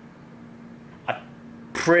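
A pause in a man's talk: a steady low hum in the room, a single short throaty sound from the speaker about a second in, then his voice again near the end.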